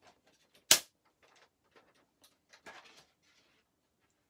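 A single sharp knock a little under a second in, as a plastic paper trimmer is moved aside across the craft mat, followed by faint paper and handling rustles.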